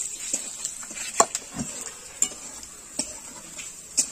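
A spatula scraping and knocking against an iron karahi, several irregular clinks, as peanuts are stirred while they fry in oil, over a faint steady sizzle.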